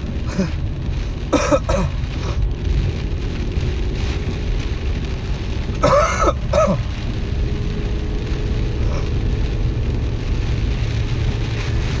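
Steady low rumble of road and rain noise inside a car's cabin, driving on a wet road in heavy rain. A man laughs and coughs briefly about a second and a half in, and clears his throat again about six seconds in.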